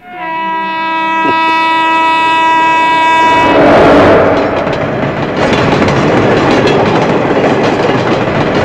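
A train horn sounds one long, steady blast for about three and a half seconds. It gives way to the loud, rushing noise of a passenger train passing close by.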